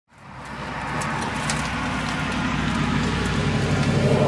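Steady low engine hum, fading in over the first second, with a few faint clicks.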